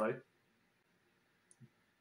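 A man's voice finishing a word, then a pause of near silence broken by one faint short click about one and a half seconds in.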